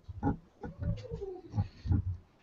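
A handheld boom microphone being handled and moved, giving low bumps and rustles, with a soft wordless vocal sound that glides down in pitch around the middle.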